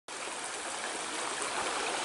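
Shallow, stony creek running and trickling over rocks: a steady, even rush of water.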